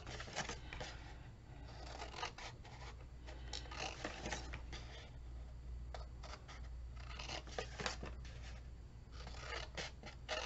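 Large scissors cutting through paper, a run of short snips at irregular intervals, with a low steady hum underneath.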